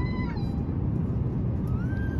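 A baby crying on an airliner: two long, wavering high-pitched wails, one falling at the start and one rising near the end. A steady cabin drone runs underneath.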